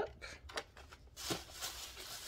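Packaging being handled: a few light clicks in the first half second, then a steady crinkly rustle from a little over a second in.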